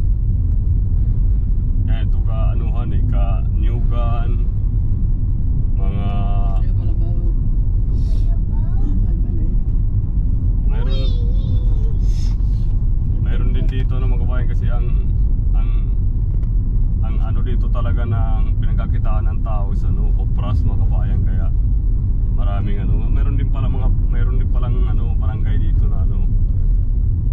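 Steady low rumble of a car driving on an unpaved road, heard from inside the cabin, with voices talking on and off over it.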